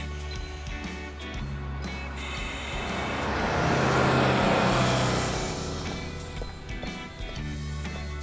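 Background music with a bus passing close by: its noise swells to a peak about halfway through and fades away.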